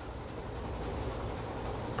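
Steady background noise: a low rumble under an even hiss.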